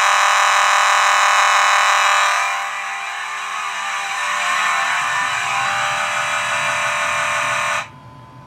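Simplex 9217 fire alarm horn sounding continuously with a raspy, buzzy tone, the sign of it being powered by full wave rectified rather than filtered DC current. It gets quieter about two seconds in and cuts off suddenly near the end as the alarm is silenced at the panel.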